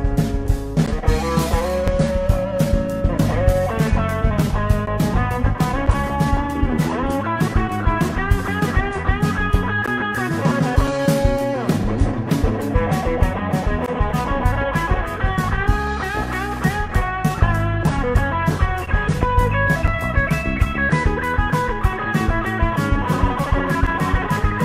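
Three-piece rock band playing live: electric guitar playing melodic lines over bass guitar and a drum kit.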